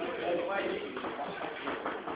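Indistinct voices murmuring in a classroom, with no clear words and no distinct sound events.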